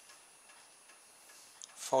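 Near silence: faint handling of a metal camera tripod, with one soft click right at the start.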